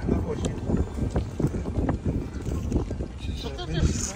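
Wind buffeting the phone's microphone over the rumble of a moving car, in irregular gusts. A voice is heard briefly near the end.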